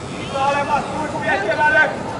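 High-pitched shouting voices calling out on the pitch, over a steady background hum of the hall.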